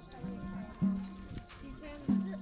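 Traditional Dao wedding music: a deep drum struck about every 1.3 seconds, each stroke ringing on briefly at a low pitch, with lighter clicking strokes between and a held high tone above.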